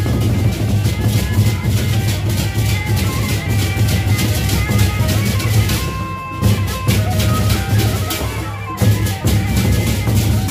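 Gendang beleq ensemble playing: large double-headed Sasak barrel drums beaten with sticks in a fast, dense interlocking rhythm, over rapid clashing of metal cymbals. The playing thins briefly about six seconds in.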